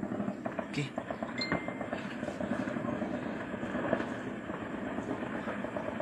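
Distant small-arms gunfire, scattered shots popping irregularly several times a second, with people's voices talking close by.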